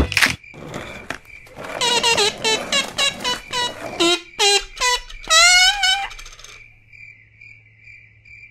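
A run of short, high-pitched squeaks from a hedgehog, starting about two seconds in. The last squeak, near six seconds, is longer and wavers in pitch. A faint steady high tone runs underneath.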